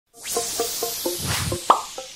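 Short electronic logo jingle: a swelling hiss under a quick run of short plopping notes, about four a second, ending in a louder, brief rising note.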